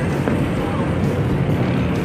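A boat's engine running steadily while under way, a constant low rumble.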